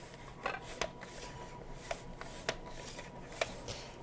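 Zucchini being sliced on a mandoline slicer with a hand guard: a few light, scattered clicks and taps.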